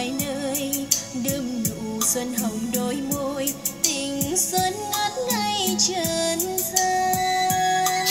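A pop song with a female singer and percussion played back through a JBZ 108 trolley karaoke speaker as a listening demo; its sound is balanced but not impressive.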